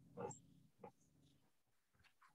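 Near silence: faint room tone over the call line, broken by two brief faint sounds, one just after the start and one just under a second in.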